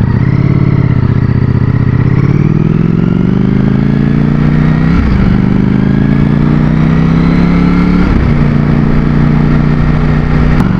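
Ducati Streetfighter V4's V4 engine pulling away and accelerating, its pitch climbing steadily. It shifts up about five seconds in and again about eight seconds in, then holds a steady pitch.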